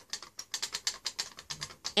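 Dry hamster food mix poured from a plastic cap into a palm: a quick, irregular run of small dry clicks and rattles as the seeds and pellets tumble out.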